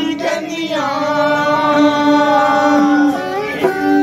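Punjabi folk singing: a singer holds one long, slightly wavering note for about two and a half seconds over a steady tone, with a bowed string instrument playing along.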